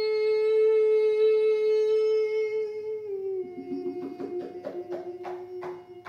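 Live music: one long held note that steps down to a lower held note about three seconds in, with a steady rhythm of short strikes or strums, about three a second, coming in under it.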